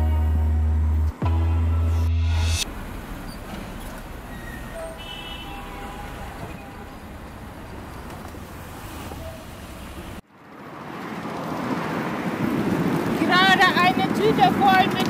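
Electronic music with a heavy bass stops abruptly about two and a half seconds in, leaving city street traffic noise. After a sudden cut, wind and road noise from riding a bicycle along a highway swells up, and a woman starts talking near the end.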